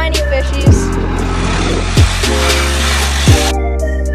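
Background music: an electronic hip-hop-style beat with a deep kick drum landing four times, steady held bass and keyboard chords, and a hiss-like wash swelling through the middle.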